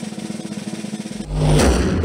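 Snare drum roll of a broadcast reveal sting, building suspense for a result. About a second in it ends in a loud hit with a deep boom and a crash.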